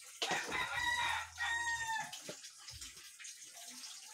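A rooster crowing once, about a second and a half long, ending on a falling note.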